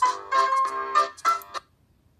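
Short menu jingle from a children's computer game: a quick run of bright, pitched electronic notes lasting about two seconds, played as the menu screen changes, ending about one and a half seconds in.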